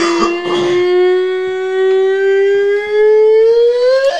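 A man's voice holding one long, loud sung note in a high register. The note drifts slowly upward and climbs more steeply near the end.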